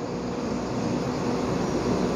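Steady rushing background noise with no words.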